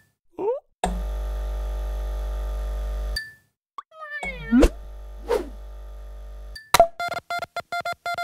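Cartoon sound design: a steady electrical buzz that cuts out and comes back, quick boing-like pitch glides and a small thump partway through, then a rapid string of short electronic beeps near the end.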